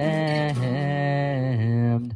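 A low male voice singing long, wordless held notes, stepping to a new pitch twice.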